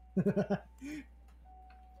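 A person laughing briefly: a short run of about four quick ha-ha pulses, then one short voiced sound, over quiet room tone.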